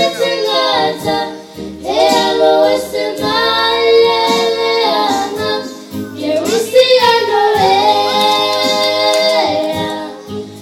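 Young girls singing a song together into microphones, amplified through a sound system. They sing long held phrases, with short breaks about a second and a half in and again about six seconds in.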